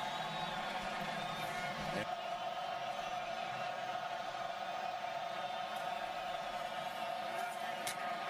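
Stadium crowd of a large football audience cheering and chanting steadily, a dense sustained mass of voices with a brief break about two seconds in.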